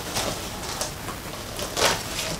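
Utility knife slicing along packing tape on a cardboard box: a run of scraping and crackling, louder for a moment near the end.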